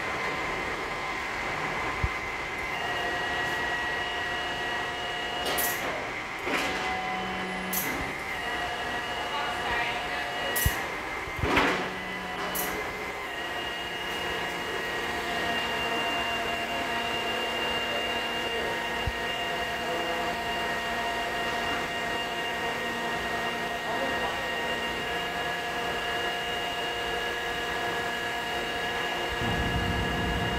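Tilt-tray tow truck's hydraulic system running with a steady whine made of several tones, which shift as the winch draws a sedan up the tilted tray. About six sharp clanks come in the first half.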